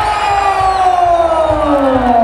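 A man's long, drawn-out yell, one held call whose pitch falls slowly, over an arena crowd cheering.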